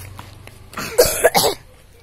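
A person coughing, a short run of two or three coughs about a second in.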